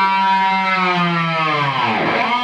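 Electric guitar played through a Laney LC30 amplifier: one held note sinks slowly and smoothly in pitch, lowered with the tremolo arm, and a fresh note starts near the end.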